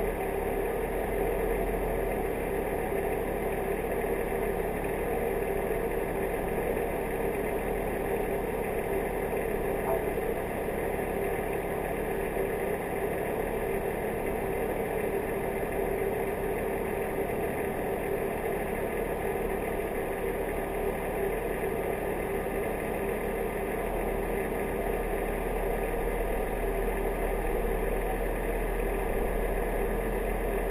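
Off-road vehicle engine running steadily at low revs, with no revving.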